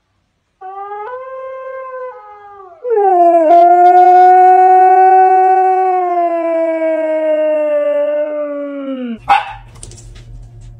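Siberian husky howling: a quieter howl first, then about three seconds in a loud, long howl that slowly sinks in pitch and stops shortly before the end. A brief sharp noise follows near the end.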